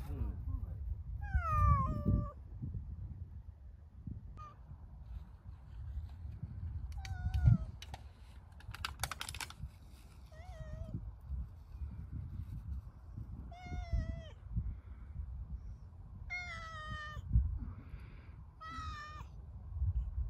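Domestic cat meowing repeatedly, about six short meows a few seconds apart, each sliding down in pitch.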